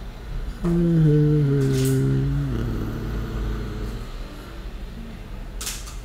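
A man's voice holding a long hummed "hmm" that starts suddenly about half a second in, sinks slightly in pitch and fades after about two seconds, with a couple of faint clicks.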